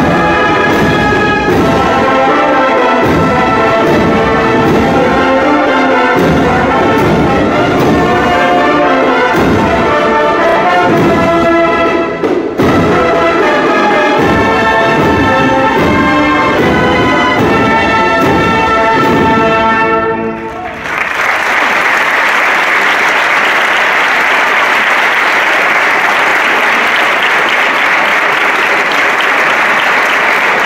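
Brass-and-drum band of trumpets and trombones playing a march, which ends about two-thirds of the way through; sustained applause follows to the end.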